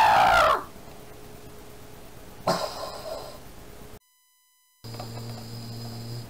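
The end of a loud, drawn-out scream in a cartoon character's voice, trailing off about half a second in, followed by a shorter cry about two and a half seconds in. Near the end the sound drops out completely for a moment, then a steady low hum comes in.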